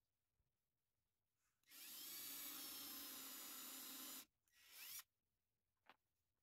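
Ridgid cordless drill/driver motor running steadily for about two and a half seconds, then a second short run about half a second later that rises in pitch, followed by a small click near the end.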